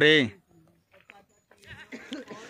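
A man's drawn-out exclamation of awe, "baap re", its pitch rising then falling, trails off in the first moment. Faint scattered sounds follow, with breathy noise near the end.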